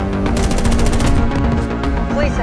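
A burst of rapid automatic rifle fire, about twelve shots a second and lasting just under a second, over a loud, dramatic film score with sustained low notes.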